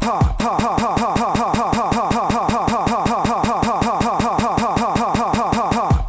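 A hip hop track held in a very short loop in the edjing DJ app: the same sliver of the beat, a quick falling sweep, repeats evenly several times a second as a steady stutter.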